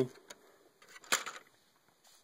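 Handling noise from a plastic Lego model: a few light clicks and one sharper clack about a second in.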